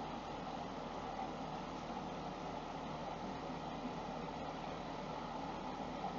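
Steady, faint background noise with no distinct events: room tone.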